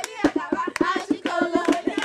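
Voices singing over a fast, steady beat of hand claps and drum strokes: lively dance music.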